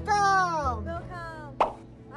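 A short cartoon-style 'plop' sound effect about one and a half seconds in: a single quick pop sweeping up in pitch, added in editing as the picture closes to a circle. Before it, a voice calls out with a long falling glide.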